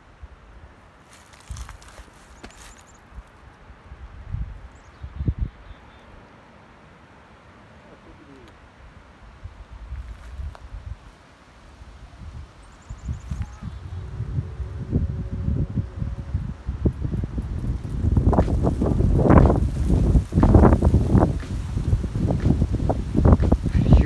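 Wind gusting through a mountain valley and buffeting the microphone. It is faint at first, builds from about halfway, and rumbles loud and uneven in the last several seconds.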